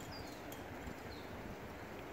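Quiet outdoor background with two faint, short bird chirps, one just after the start and one about a second later.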